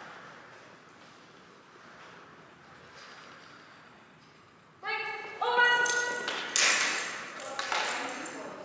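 A woman's high-pitched, drawn-out call in two held notes about five seconds in, the release cue that sends the dog off the start line, followed by several loud, sharp noisy bursts near the end. Before the call there is only quiet room tone in a large hall.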